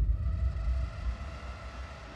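A deep low rumble, loudest at the start and fading away over about two seconds.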